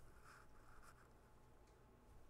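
Near silence: faint pencil scratching on paper during the first second, over quiet room tone.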